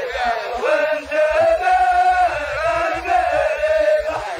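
A chorus of many men chanting a muhawarah verse in unison, in drawn-out phrases with long held notes.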